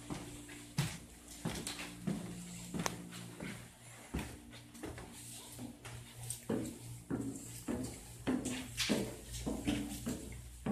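Footsteps climbing a wooden staircase: a string of knocks about every half second to a second, more regular in the second half. A steady low hum runs underneath.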